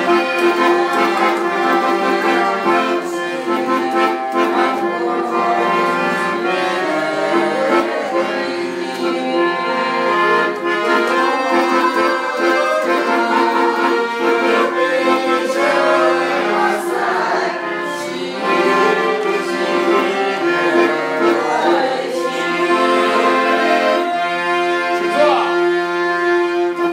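Piano accordion playing a tune, with a melody moving over steady held chord notes.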